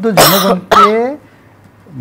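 A man clearing his throat: two loud, harsh bursts close together, the second partly voiced.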